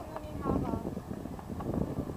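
Indistinct voices of people talking in the background, with low wind noise on the microphone.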